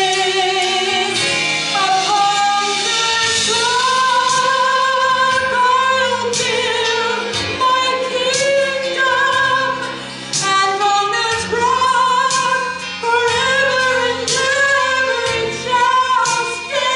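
A woman singing a Christian worship song solo through a microphone, holding long notes with vibrato.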